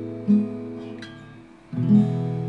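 Acoustic guitar: a chord rings and fades, a new note is plucked about a quarter second in and dies away, then a fresh chord is struck near the end, fretted higher up the neck.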